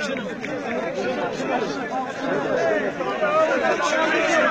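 Many people talking over one another: a dense babble of crowd chatter that grows somewhat louder.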